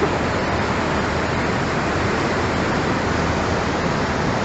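Flash-flood torrent of muddy water rushing past, a loud, steady rush of noise.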